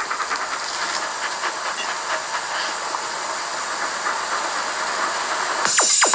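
Steady hissing ambience of a wet road in light rain, with faint ticks, from the music video's soundtrack. Near the end electronic music comes in with quick falling synth sweeps.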